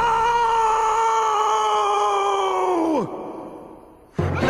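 A cartoon character's long, drawn-out scream held on one pitch that sinks slowly, then falls away sharply about three seconds in and fades out.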